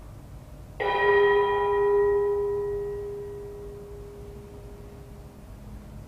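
A bell struck once, ringing out with several tones and fading away over about four seconds, the low tone lasting longest.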